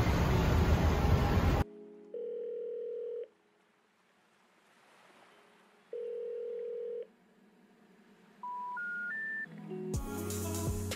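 Telephone ringback tone: two long single-pitch beeps about four seconds apart, followed by three short rising notes, the special information tone that signals a call that cannot be completed. Before the beeps, a loud noise cuts off suddenly.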